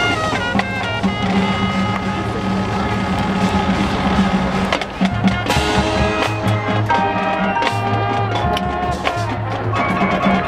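Marching band playing a field show: brass holding and changing chords over low bass notes, with drum hits.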